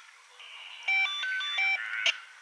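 A short electronic beep melody about a second in: a few clear tones step up in pitch and back down again, lasting under a second, like a phone ringtone or device alert.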